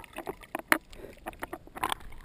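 Seawater sloshing and splashing around a waterproof camera held just under the surface, with scattered sharp clicks and a splashier burst near the end as it rises out of the water.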